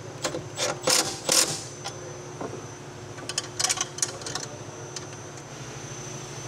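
Cordless power ratchet running bolts down to snug a mounting bracket tight, in two spells of rapid mechanical clicking: one in the first second and a half and one about halfway through. A steady hum sits underneath.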